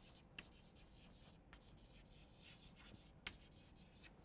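Chalk writing on a blackboard, faint overall: soft scratching strokes with a couple of sharp taps of the chalk, one about half a second in and another near the end.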